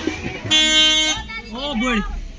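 A vehicle horn sounding once, a steady single-pitched honk of a little under a second about half a second in, followed by people talking.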